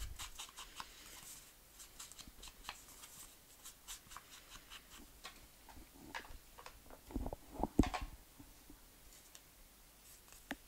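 Soft repeated dabbing and scuffing of a foam ink-blending tool against kraft cardstock as brown ink is worked around the card's edges. A few louder knocks come about seven to eight seconds in, as the small ink pad is handled and set down on the worktop.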